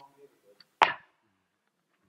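A single short, sharp sound close to a table microphone a little under a second in, against faint room noise.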